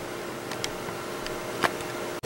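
Steady background hiss with a faint steady hum, broken by a soft click about a second and a half in.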